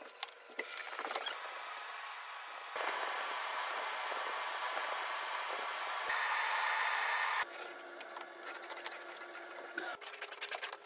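Table saw running with a steady high whine, then cutting through a thin strip of wood for about a second and a half, the loudest part, before the cut ends and only light tool clicks remain.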